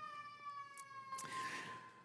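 A faint, sustained high whistling tone with overtones, drifting slowly down in pitch and stopping shortly before the end.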